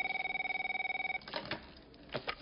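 Landline telephone ringing with an electronic warbling tone: one ring that stops a little over a second in. A few sharp clicks follow as the corded handset is picked up.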